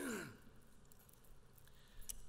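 A man sighs once into a podium microphone, a short breathy sigh falling in pitch, right at the start. After it there is only faint room tone.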